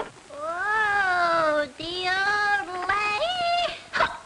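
A voice singing in long meow-like glides, three phrases that each rise and fall in pitch, the last with a quick upward swoop.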